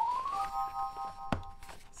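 Editing sound effect: a pure tone gliding upward, then a held synthesized chime chord of several notes lasting about a second, with a sharp click near its end.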